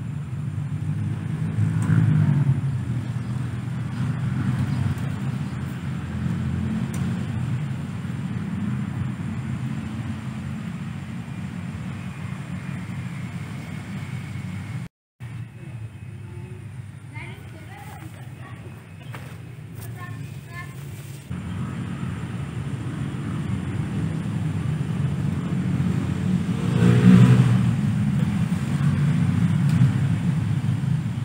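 Steady low outdoor rumble like distant motor traffic, broken by a short dropout about halfway through and swelling to its loudest near the end. The quieter stretch just after the dropout carries a few faint high chirps.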